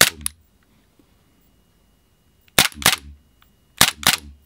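Western Arms SW1911 gas blowback airsoft pistol being fired, three shots in all. Each shot is a pair of sharp cracks about a third of a second apart: one near the start, one about two and a half seconds in, one near the end.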